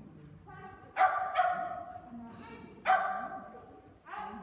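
A dog barking excitedly as it runs an agility course: three loud, sharp barks about a second in, just after, and near three seconds, with a fainter one before them, each echoing off the hall.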